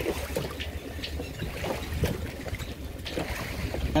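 Wind gusting on the microphone over the low rumble of a passing motorboat, with water sloshing against the side of a small boat.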